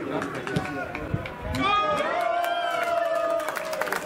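Players and spectators shouting on an open football pitch as a goal is scored, one voice holding a long cry through the middle, with a few claps and scattered cheers.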